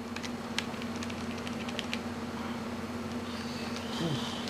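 Scattered light clicks of keys being pressed, a few each second, over a steady hum.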